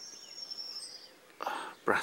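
Quiet outdoor background with a faint, thin high whistle for about the first second, then a short rush of noise near the end just before speech resumes.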